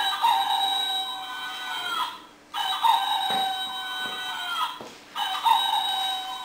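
Toy rooster playing a recorded cock-a-doodle-doo crow three times in a row, each crow about two seconds long and sounding the same.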